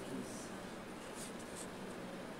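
Faint room sound with a low murmur of voices and a few soft, brief scratching sounds.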